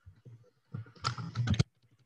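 Typing on a computer keyboard: a quick run of keystrokes in the second half.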